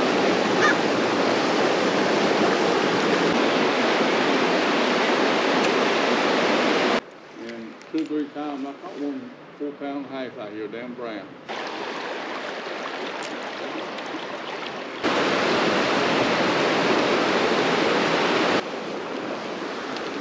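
Creek water rushing over rocks, a steady noise that jumps up and down in level several times where the clips change. In a quieter stretch in the middle, faint talk is heard under the water.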